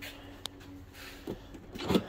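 Faint clicks and handling noise from the charging cable and connector at a Tesla Model X's open charge port, over a faint steady hum, with a louder knock just before the end.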